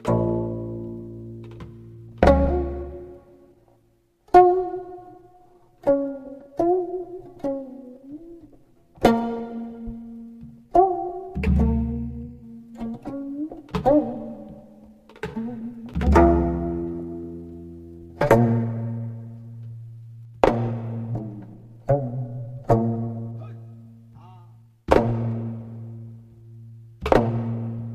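Slow Korean traditional plucked-string music accompanying a fan dance: single plucked notes every second or two, each dying away, some bent in pitch after they are struck, with a few deep low notes beneath.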